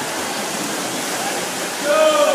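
Swimmers splashing through a freestyle race: a steady rushing wash of churned water echoing in an indoor pool, with faint shouts from spectators.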